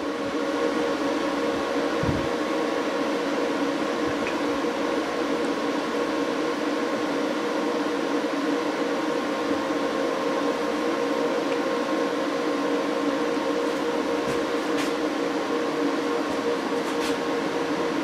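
Growatt 5000ES solar inverters running under load: steady cooling-fan noise with a hum made of a few steady tones.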